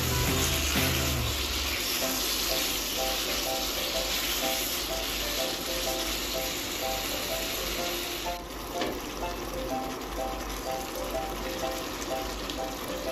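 Beef and beef liver sizzling in a wok of thick sauce as they are stirred with a spatula; the sizzle eases somewhat about eight seconds in.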